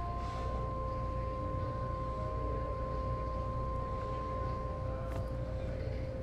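Quiet background score of long held notes over a steady low hum, the higher note stopping about five seconds in.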